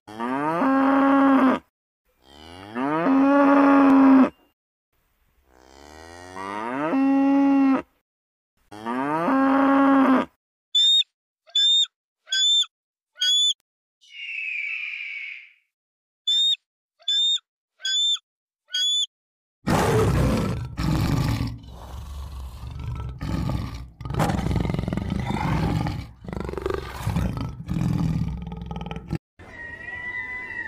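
A calf mooing four times, each long call rising at the start. After that come two runs of short, high calls about two a second, with a brief hiss between them, and in the last third a string of rough, noisy bursts.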